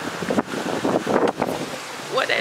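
Wind buffeting a handheld camera's microphone outdoors, an uneven, fluttering rush of noise.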